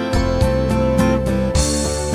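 Steel-string acoustic guitar fingerpicked in a gentle folk arrangement, with ringing notes over a bass line at about three plucks a second. Near the end comes a brighter stroke across the strings with a hiss of string noise.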